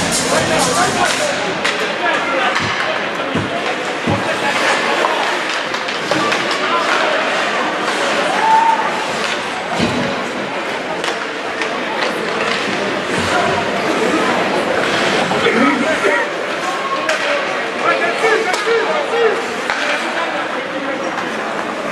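Ice hockey play in an echoing arena: skates scraping the ice and sticks and puck clacking in frequent sharp knocks, over a steady murmur of voices from the crowd and players.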